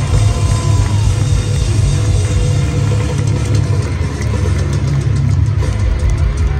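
Heavy metal band playing live through an arena PA: distorted guitars, bass and drums in a loud, steady wall of sound dominated by a heavy low-end rumble.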